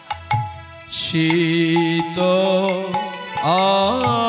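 Bengali kirtan music: a few khol drum strokes, then a harmonium and a man's voice holding long notes, the voice sliding up into a new note near the end.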